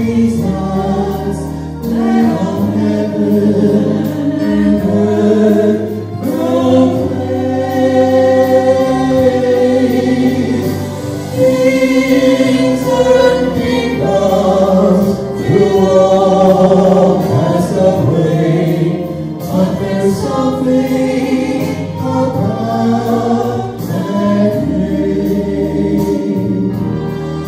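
A man and a woman singing a Christian song together into handheld microphones, with held notes over a low sustained accompaniment.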